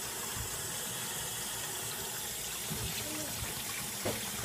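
Kitchen faucet running steadily into a sink, water pouring into a small dish until it overfills, a constant even splashing hiss.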